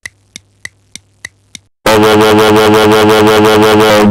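Clock ticking, about three ticks a second over a faint hum. About halfway through it cuts off into a loud, steady drone with a fast pulse.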